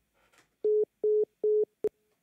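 Telephone line beeps as a call is put through: three short steady tones about 0.4 s apart, then a brief fourth blip.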